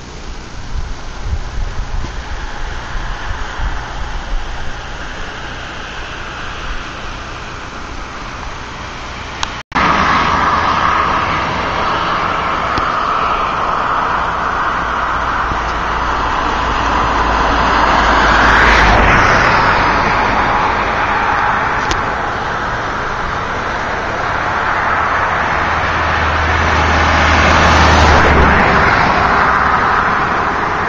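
Car driving along a road: steady road and wind noise, gusty and rumbling at first. After a cut about a third of the way in it is louder and steadier, swelling twice, about halfway and again near the end.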